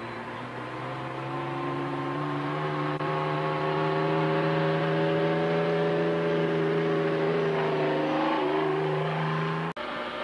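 Motorcycle engine running at a steady pitch, growing louder as it approaches, with its pitch wavering near the end. The sound cuts off abruptly with a click just before the end.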